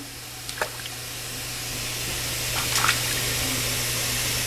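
Water splashing as a baby slaps the water in a plastic baby tub, over the steady rush of a running kitchen faucet; the sound grows slowly louder, with a few sharper slaps.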